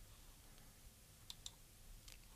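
Near silence broken by two faint computer mouse clicks, a fifth of a second apart, about a second and a half in.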